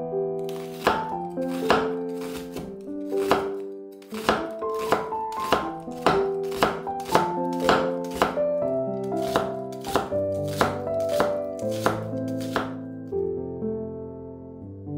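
Kitchen knife slicing an onion into thin strips on an end-grain wooden cutting board: a run of sharp cutting knocks, about two a second, starting about a second in and stopping near the end. Light piano background music plays under it.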